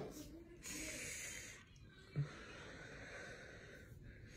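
A man's audible breathing: a noisy breath lasting about a second, starting about half a second in, then a short low vocal sound at about two seconds.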